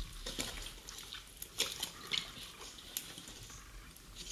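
Wet squelches and small crackles of thick gunge around sneakers submerged in it: an irregular scatter of short, sharp clicks.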